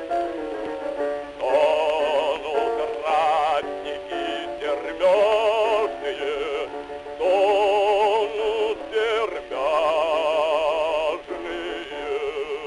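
Acoustic-era 78 rpm gramophone disc recording of a Russian bass singing a song with piano accompaniment. The voice carries a wide vibrato and comes in phrases with short breaks. The sound is thin and narrow, with little below about 250 Hz or above 4 kHz, as is typical of a pre-electrical recording.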